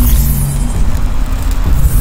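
Sound-designed magic energy effect as a glowing orb builds in a hand: a loud, deep rumble with a steady low hum running through it.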